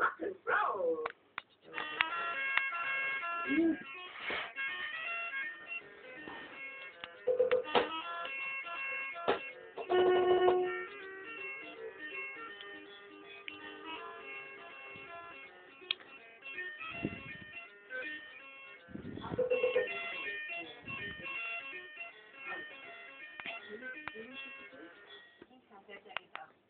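Children's electronic musical learning toy playing tinny electronic jingles and voice snippets. They start over again and again as its buttons are pressed in quick succession.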